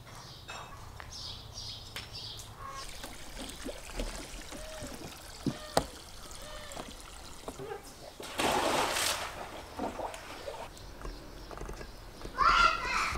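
Water trickling and splashing, with a louder rush of splashing about eight seconds in that lasts about a second.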